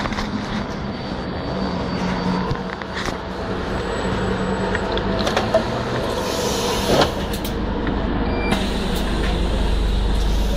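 London bus engine running at close range as the bus stands at the stop, with a few clicks and knocks over it. About eight and a half seconds in a hiss starts, and the engine's low rumble swells toward the end.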